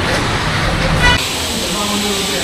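Street traffic rumble with a short vehicle horn toot about a second in. The sound then cuts abruptly to quieter indoor room tone.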